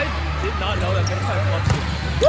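Indoor volleyball rally in a gym hall: sneakers squeaking on the court floor and a sharp ball hit near the end, with players' calls.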